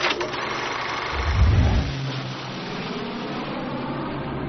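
Film projector running steadily, with a deep low boom about a second in.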